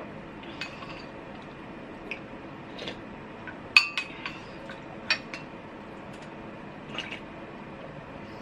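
White ceramic soup spoon clinking against a glass bowl of ginger soup as it is scooped: a scattering of light clinks, the sharpest pair just under four seconds in.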